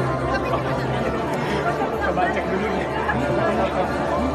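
Indistinct chatter of many people talking at once, over a steady low hum.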